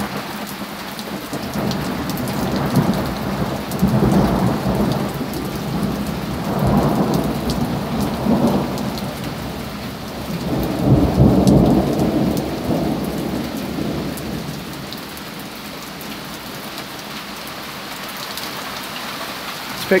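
Thunder rolls in several swells after a lightning flash, then dies away over steady heavy rain falling on the porch and garden.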